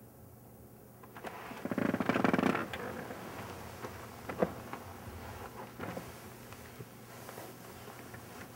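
A bed creaks with a rapid run of small pulses as a man shifts his weight and gets up from its edge, followed by soft rustling of bedclothes and a few light clicks as he leans over to tuck the covers in.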